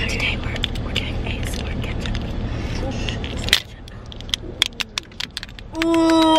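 Foil lid of a ketchup dip cup being peeled off close up: crinkly crackling and sharp little clicks of the foil, over a steady car-engine rumble that drops away about three and a half seconds in. A voice starts just before the end.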